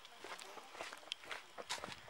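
Faint footsteps of people walking on a paved, gritty trail, a few soft irregular steps.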